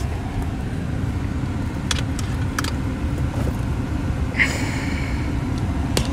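Steady low rumble of a car heard from inside the cabin, with a few faint clicks and a brief hiss about four and a half seconds in.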